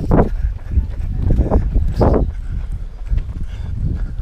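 Wind buffeting a handheld camera's microphone as it is carried by a running marathon runner, with a few irregular thumps and knocks from the jostled camera and his stride.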